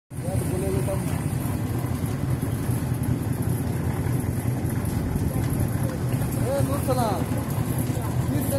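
A steady low rumble runs throughout, with people talking faintly about half a second in and again near the end.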